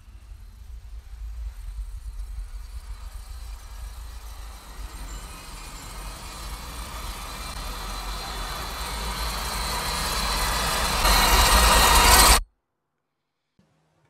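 Film sound design: a deep rumble under a rushing noise that swells steadily louder for several seconds, then cuts off suddenly near the end.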